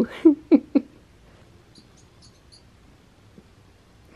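A woman's short laughs, three quick ones in the first second, then quiet room tone with a few faint high-pitched ticks in the middle.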